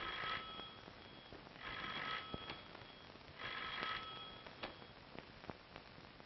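Electric doorbell ringing in three short bursts, about a second and a half apart, with a few faint clicks after them.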